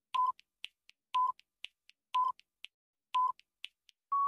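Quiz countdown-timer sound effect: four short electronic beeps, one a second, with faint ticks between them, counting down the seconds.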